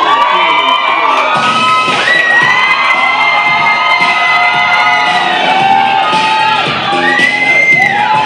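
An audience cheers and screams over a pop dance track played for the routine, with long high-pitched screams held above the music.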